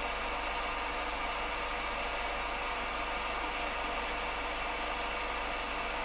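Steady hiss with a faint constant hum and thin whine underneath, the background noise of the ROV's recording setup; no distinct sound stands out.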